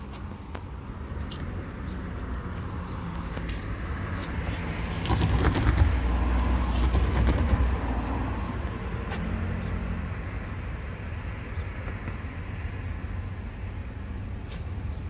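Road traffic: a motor vehicle passes on the street, its engine and tyre noise swelling about five seconds in and fading after about eight seconds, over a steady low hum.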